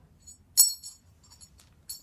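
Metal rigging plate and ring clinking together as they are threaded onto a climbing rope: a sharp ringing clink about half a second in, a few light ticks, then another ringing clink near the end.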